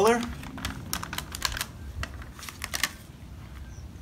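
Irregular light clicks and taps from plastic nursery pots being handled as a vinca plant is moved into a square plastic pot of soil, thinning out about three seconds in.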